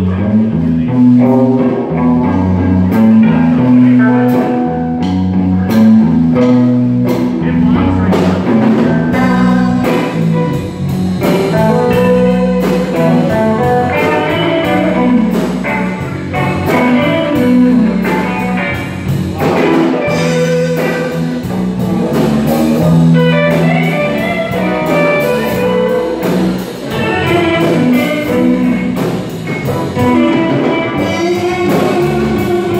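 Live band with electric guitars, electric bass and drum kit playing a loud, steady groove with a moving bass line; the cymbals come in fully about eight seconds in.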